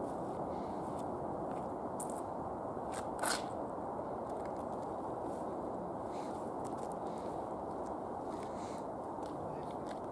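Footsteps on wet grass and mud over a steady outdoor noise, with a few light ticks and one sharper click about three seconds in.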